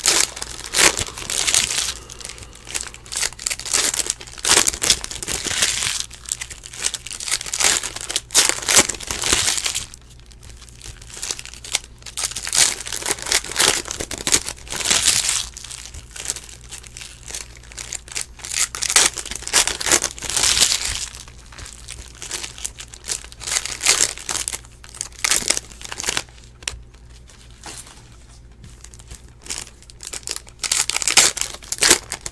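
Foil trading-card pack wrappers crinkling and being torn open as the packs are opened by hand, in irregular bursts of crackle with short quieter gaps.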